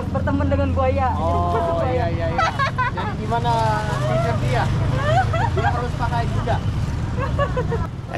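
Several people talking in Indonesian over city street traffic: a steady low drone of car and motorbike engines.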